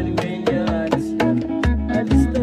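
Electric guitar and electric bass guitar playing Tuareg desert-blues music. Low bass notes move about every half second under a guitar line that bends in pitch, over a steady percussive beat.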